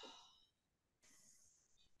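A faint sigh: a breathy exhale that fades within half a second, followed by a softer intake of breath.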